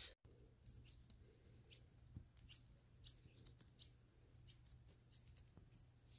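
Near silence with a bird chirping faintly: short, high chirps repeating irregularly, about one every half second to second.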